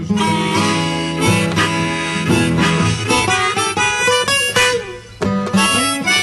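Harmonica played in a neck rack over acoustic guitar, an instrumental break in a folk blues song, with a brief drop in loudness about five seconds in.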